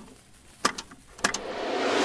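Plastic clicks of a cassette being loaded into a portable boombox's tape deck: a few sharp clacks spaced apart, then a hiss that swells toward the end.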